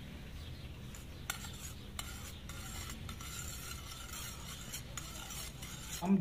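A steel spoon stirring food colouring into milk in a steel bowl, faint, with a few light clinks of the spoon against the bowl.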